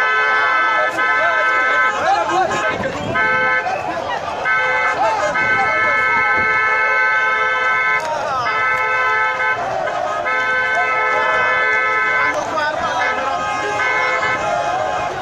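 A vehicle horn honking in a run of steady blasts, most about a second long and the longest about two and a half seconds, over voices.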